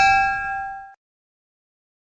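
Bell-like ding sound effect, the notification-bell chime of a subscribe animation, ringing out with several clear tones and fading, then cutting off about a second in; silence follows.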